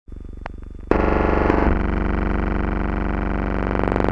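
Loud, distorted electrical buzz over a low hum from an old film soundtrack, starting faint and jumping much louder about a second in, then holding steady.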